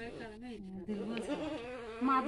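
Quiet, overlapping voices of several people talking at once, with no clear animal call or tool sound standing out.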